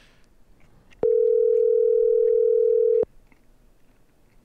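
Telephone ringback tone on an outgoing call: one steady ring about two seconds long, starting about a second in. It is the sign that the called phone is ringing and has not yet been answered.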